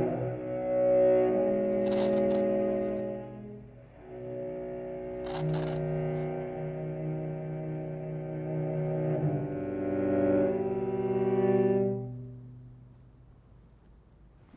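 Solo cello playing slow, sustained notes, often two or more at once, changing pitch every few seconds and fading out about twelve seconds in. Two brief crisp noises sound over it, near two and five seconds in.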